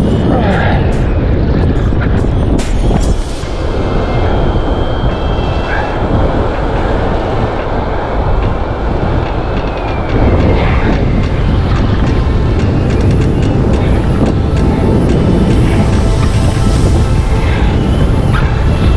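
Strong wind buffeting the microphone over the noise of breaking surf.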